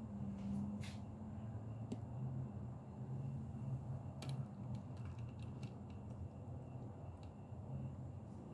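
Low steady room hum with a few faint clicks and ticks as the metal hood panels of a 1937 Packard sedan die-cast model car are handled and swung open, most of them between about four and six seconds in.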